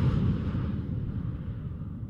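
Intro sound effect: the rumbling tail of a whoosh-and-boom, fading steadily.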